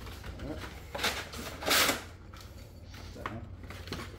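Cardboard band saw blade box being opened and handled: a short rustle about a second in, then a louder burst of cardboard rustle just before the halfway point.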